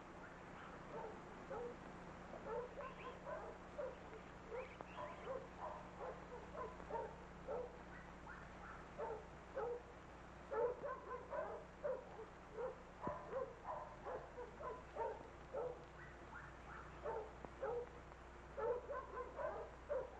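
German shepherd giving short barks and yelps over and over, two or three a second, in quicker, louder runs about halfway through and near the end.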